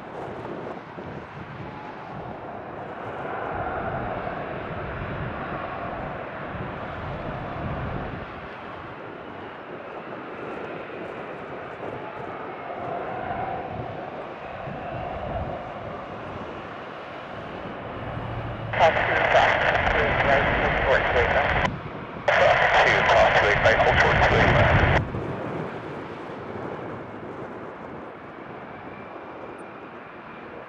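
Twin GE F414 turbofans of F/A-18F Super Hornets whining at taxi power, a steady jet hum with slight shifts in pitch. Later, two loud bursts of air-band radio transmission from a scanner cut in and out abruptly, louder than the jets.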